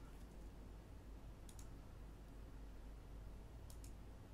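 Faint clicks of a computer keyboard and mouse over quiet room tone: a short run of quick clicks about a second and a half in, and a couple more near the end.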